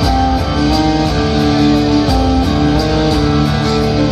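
Live folk-band music: plucked strings and held melody notes over a steady percussion beat, with no singing.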